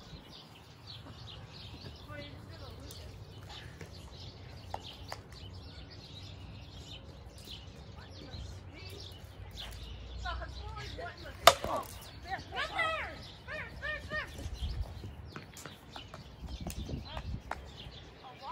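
A plastic wiffle ball bat hits a wiffle ball once, a sharp crack about two-thirds of the way in, followed by players shouting in the distance. A low wind rumble on the microphone runs underneath.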